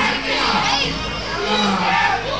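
Wrestling crowd shouting and cheering, many voices at once.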